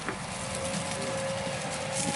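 Fendt 1050 Vario tractor running steadily under load as it pulls a subsoiler through stubble, a steady tone held over the engine and ground noise.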